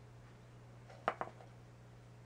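Two or three quick, light knocks of a serving spoon against the dish or the stainless steel mixing bowl about a second in, as breadcrumbs are scooped and spread. A faint steady low hum runs underneath.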